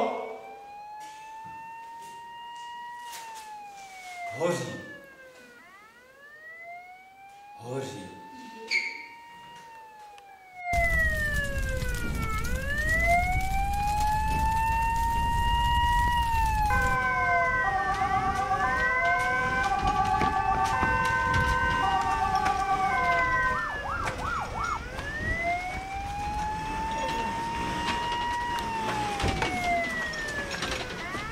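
A siren wailing, its pitch rising and falling about every four seconds. From about eleven seconds a low rumble joins it, and for several seconds a second pattern of short stepped tones plays over the wail.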